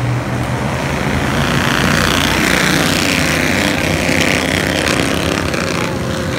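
A pack of Bandolero race cars with small single-cylinder engines running hard together as the field starts the race, a dense buzzing engine noise that swells and grows loudest in the middle as the cars pass.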